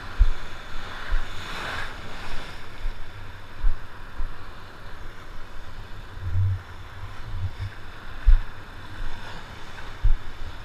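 Broken surf and whitewater washing around in shallow water, with the rush swelling about a second and a half in, while gusts of wind buffet the microphone in irregular low rumbles.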